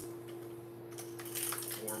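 Hard plastic fishing plugs being handled over plastic tackle trays: light clicks and rustling, over a steady hum.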